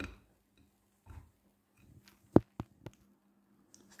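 Castor CX342 front-loading washing machine in its 70 °C main wash: a faint steady hum, with a few sharp clicks and knocks about two and a half seconds in as the drum turns the sudsy load.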